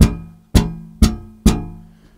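Yamaha BB735A five-string electric bass slapped four times on the same low note with the thumb striking the string square-on, each slap ringing and dying away. The strikes are about half a second apart.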